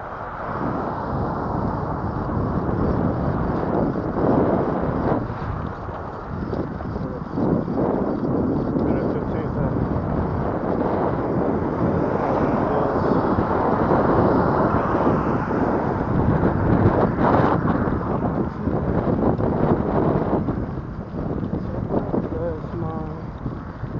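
Wind buffeting the microphone and tyre rumble from an electric bicycle riding over rough, cracked and patched pavement. The noise surges and eases as the bike moves.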